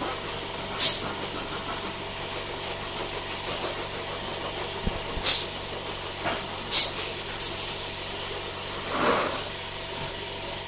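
Palletiser for 4-litre metal cans running with a steady machine hum, its pneumatic valves venting air in short, sharp hisses: one about a second in, one about five seconds in, and three close together around seven seconds. Near the end comes a duller, lower rushing sound.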